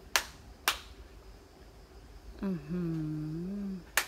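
Two sharp hand claps about half a second apart, the paired claps of worship at a Shinto shrine.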